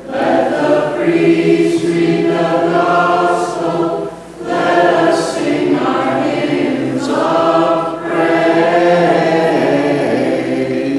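Voices singing a hymn of the Maronite liturgy, in sung phrases with a short break about four seconds in and a brief one near eight seconds.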